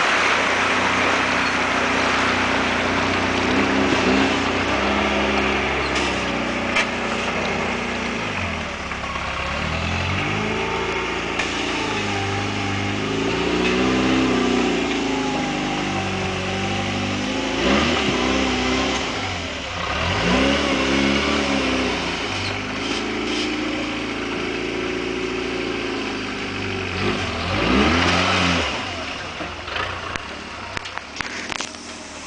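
Rock-crawler buggy's engine revving in repeated bursts, its pitch rising and falling as it works the buggy up a steep rock ledge.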